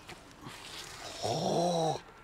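A man's low, drawn-out groan lasting most of a second near the end, rising a little at its start, as a thrown disc sails past its target.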